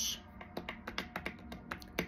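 A quick, irregular series of light clicks and taps over quiet background music.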